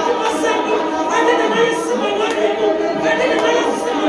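A congregation of women singing together without instruments, many voices overlapping on held notes.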